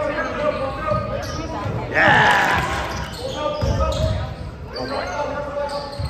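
A basketball being dribbled on a hardwood gym floor during play, with spectators' voices echoing around the gym and a loud shout about two seconds in.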